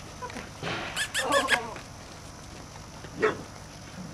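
A dog yipping: a quick run of short high yips about a second in, then one more short yelp a little after three seconds.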